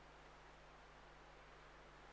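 Near silence: room tone with a faint steady hiss and a low hum.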